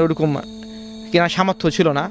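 A man talking in Bengali, breaking off for about a second in the middle. Under his voice a steady, even hum of several held tones carries on and is heard alone in the pause.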